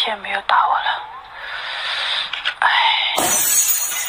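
A drinking glass pushed off a counter by a cat falls and shatters on the floor about three seconds in, after a woman's brief voice and laughter.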